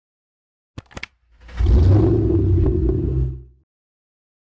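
Intro logo sound effect: a few sharp clicks, then a low rumbling whoosh lasting about two seconds that fades out before the end.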